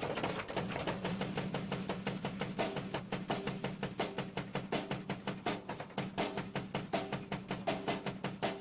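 Drum kit played with sticks in a fast, even beat, a dense run of sharp strokes over a steady low ring from the drums.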